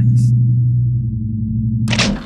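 Steady low electronic drone, a sustained synthesizer bass tone, with a short noisy whoosh just before the end.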